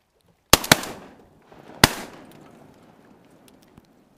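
Three shotgun shots at ducks: two almost on top of each other about half a second in, then a third about a second later, each trailing off in echo.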